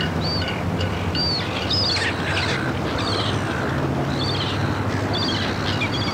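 Birds chirping: short arching calls repeated about once a second, over a low steady drone.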